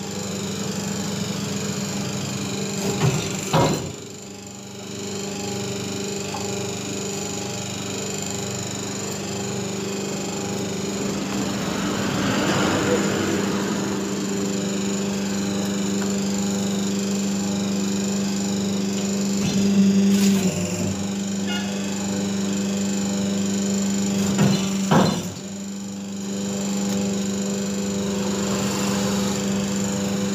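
Hydraulic single-die paper plate press running with a steady hum from its motor and hydraulic pump. A sharp knock from the die comes a few seconds in and again near the end, each followed by a short drop in the hum.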